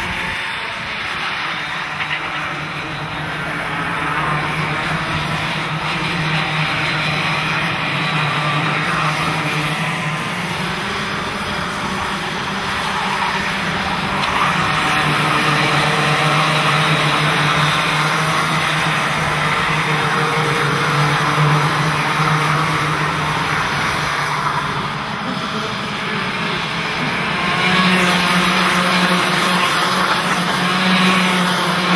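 A pack of two-stroke racing karts running at speed, several engines whining together in a steady drone that swells near the end as karts pass close.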